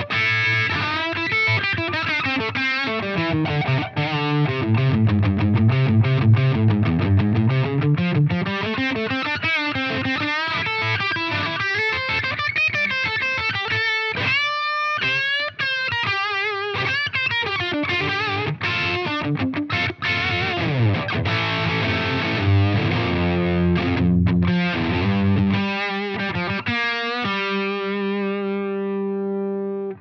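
Electric guitar played through a Flattley Plexstar overdrive pedal with its gain turned up, giving a crunchy, distorted Plexi-Marshall-style tone. The playing is riffs with bends and slides, with a short break about halfway, and ends on a chord left ringing.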